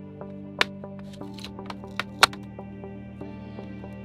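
An ASUS laptop's bottom-cover clips snap loose as the panel is pried off with a plastic spudger. There are three sharp clicks: one about half a second in, then two close together around two seconds in, the last the loudest. Steady background music plays underneath.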